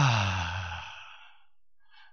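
A man's long, audible sigh through a microphone: it starts voiced, falls in pitch and trails off into breath, fading out about a second and a half in.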